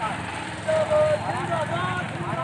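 Men's raised voices, high-pitched and in short phrases, over a steady low rumble of street noise.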